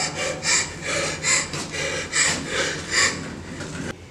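A person panting in rapid, audible breaths, about two or three a second, in fear, then stopping abruptly.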